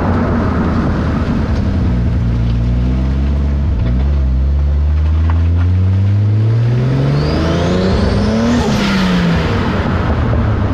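Toyota Supra's turbocharged 2JZ-GTE inline-six under load, heard from beneath the car by the exhaust: the revs climb steadily for about seven seconds, then drop near the end. A faint high whine rises with the engine just before the drop.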